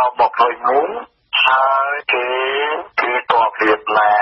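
Speech only: a news reader talking continuously in Khmer, with the thin, narrow sound of a radio broadcast.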